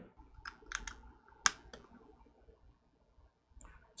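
A few small, sharp clicks and taps from handling a pocket-sized plastic tester box and plugging a USB-C cable into it. The loudest click comes about a second and a half in, with fainter ones near the end.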